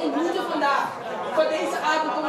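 Group prayer: a woman praying aloud over the hall's microphone and PA, with other voices praying at the same time underneath, overlapping and unbroken.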